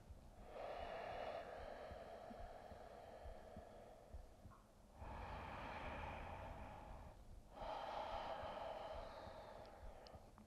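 A woman's slow, deep breathing, heard faintly: one long breath, then two shorter ones with brief pauses between them.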